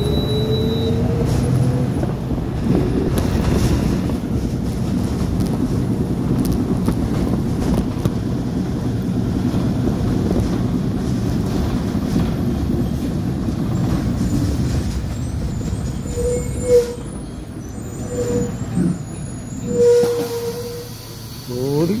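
Inside a city bus: the bus engine and running gear make a loud, rough, steady noise. The rider takes it for a tired, struggling engine. The noise eases off in the last few seconds as the bus slows to a stop, with a few short brake squeals.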